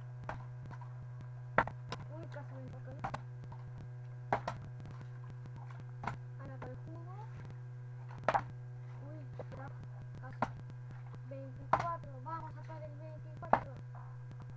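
Partly water-filled plastic soda bottle being flipped and landing on a table top: a series of sharp knocks every one to two seconds, the loudest near the end, over a steady low hum.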